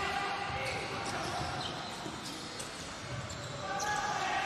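Futsal ball being played on an indoor court: a few sharp knocks of the ball being kicked and striking the floor over the steady background noise of the crowd in the hall.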